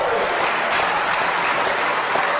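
Audience applauding, steady and loud.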